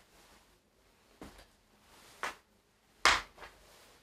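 A footbag kicked with the inside of the foot on a wooden parquet floor, heard as a few short soft thuds about a second apart, the one about three seconds in the loudest.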